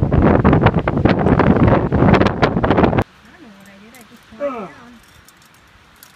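Loud wind noise buffeting the microphone, crackling and rumbling for about three seconds, then cutting off abruptly. After that it is quiet, with a faint voice.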